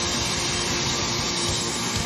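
Live rock band playing an instrumental passage: distorted electric guitars over drums, with one steady held note.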